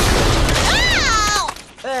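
Cartoon blast sound effect: a loud noisy rush lasting about a second and a half. A high-pitched yell rises and falls partway through, and the rush cuts off shortly before the end.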